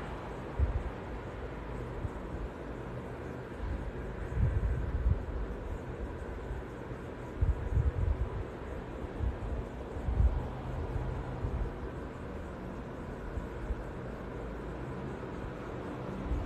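Quiet room tone: a steady low rumble, with a few soft low thumps at about a second in, around four seconds, around eight seconds and around ten seconds.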